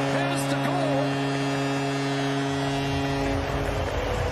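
Arena goal horn blaring a steady low note just after a home goal, over a cheering crowd; the horn stops about three and a half seconds in.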